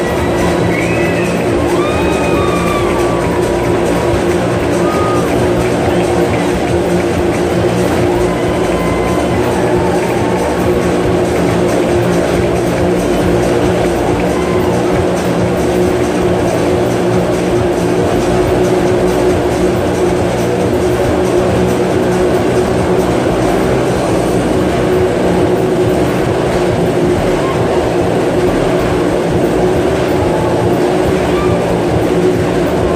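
Several motorcycle engines running continuously inside a steel-mesh globe of death, under loud circus music.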